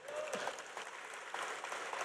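Faint applause from a hall audience, a low even patter of many hands clapping.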